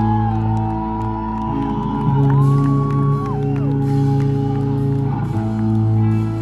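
A live rock band holding long sustained guitar chords that shift to new chords a few times, with crowd whoops and shouts gliding up and down over them.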